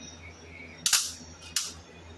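Two sharp clacks, about 0.7 s apart, from the hinged panels of a folding jewellery display stand knocking together as it is handled and folded away.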